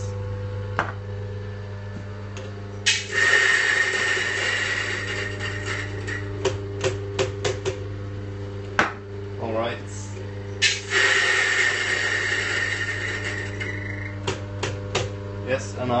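Mahlkönig EK43 coffee grinder running with a steady motor hum, grinding a dose of beans twice: a loud grinding rush starts about three seconds in, lasts about three seconds, and comes again about eleven seconds in. Between the grinds there are short clicks and knocks.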